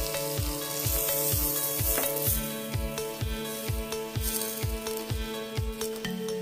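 Sliced onions and diced red pepper sizzling in a steel pan with chicken broth just poured in. Background music plays throughout, with a steady beat of a little over two thumps a second.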